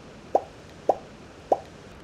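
Three short pop sound effects, about half a second apart, each a quick rising blip. They are editing pops that go with three logos appearing on screen.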